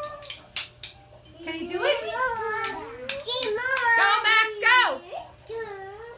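Toddler babbling and calling out in a high voice, with long sounds that rise and fall in pitch. Several sharp claps come in, three near the start and a cluster around the middle.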